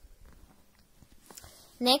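Faint scratching and small ticks of a ballpoint pen on notebook paper as a less-than sign is written. A woman's voice starts near the end.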